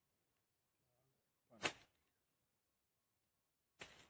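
Near silence broken by two brief rustling noises about two seconds apart, the first the louder.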